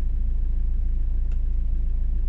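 Steady low rumble inside the cabin of a 2008 Volkswagen Jetta 2.0 TDI, the car's own running and road noise coming through.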